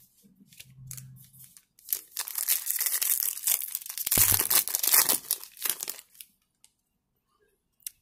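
A foil trading-card pack being torn open by hand: a run of ripping and crinkling from about two seconds in, lasting about four seconds.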